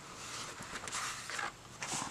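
Watercolor paper rustling and sliding as a loose sheet and a spiral-bound journal are moved and laid down on a cutting mat, with a soft knock near the end.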